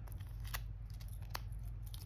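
A few light clicks and ticks as fingers with long nails handle a nail polish strip, peeling it from its backing over a plastic sleeve. Two ticks stand out, about half a second and just over a second in.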